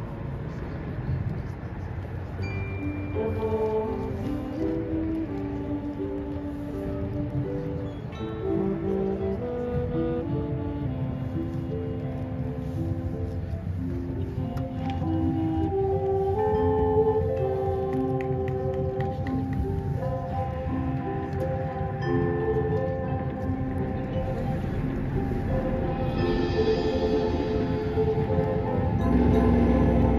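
Marching band field-show music: a slow melody of held notes, with mallet percussion from the front ensemble over a low rumble. It gets louder about halfway through and swells again near the end.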